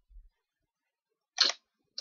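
A single sharp computer mouse click about one and a half seconds in, opening a folder; otherwise near silence.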